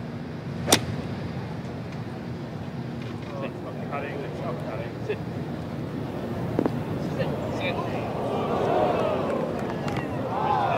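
A golf club striking the ball once, a single sharp crack about a second in, over the steady murmur of a gallery of spectators, whose voices rise a little near the end.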